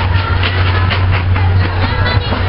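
The engine of a lorry carrying a carnival float runs close by with a steady low hum. Voices from the parade are mixed in.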